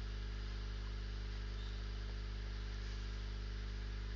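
Steady electrical mains hum: a low, unchanging drone with a stack of overtones, and nothing else.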